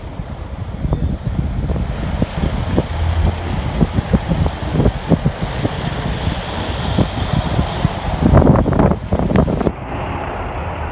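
Vehicle driving on a rough road, heard from on board: a steady low rumble of engine and tyres with frequent short knocks and rattles, loudest about eight to nine seconds in.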